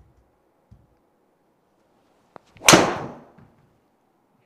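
A driver striking a golf ball off a tee: one sharp, loud crack about two-thirds in, ringing briefly in the small indoor hitting bay. The strike is slightly off the heel, a tiny bit heely.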